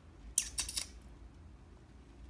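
A brief scratchy rustle of a few quick clicks, lasting about half a second, starting a few tenths of a second in, against a low background hum.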